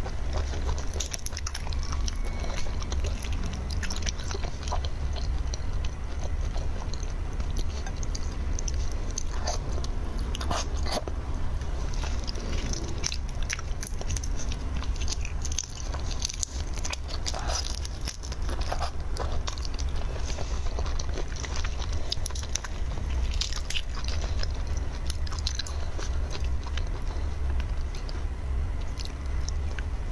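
Large red shrimp being peeled and eaten close to the microphone: the shells crackle and tear under the fingers, with sucking and chewing. A steady low hum runs underneath.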